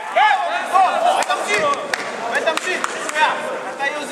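Several men in a sports hall shouting encouragement over one another, with a few short sharp slaps or knocks among the shouts.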